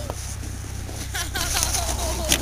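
Voices of people in a run of short, quick calls starting about a second in, over a steady low hum.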